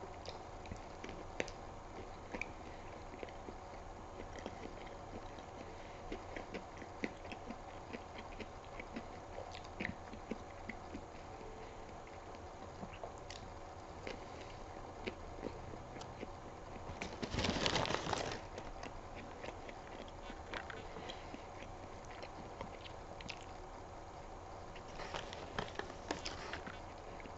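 A person chewing mouthfuls of a soft burger (a plant-based Impossible Whopper) close to the microphone: small wet mouth clicks over a steady low hum. A louder rush of noise lasting about a second comes about two-thirds of the way in, and a paper wrapper rustles near the end.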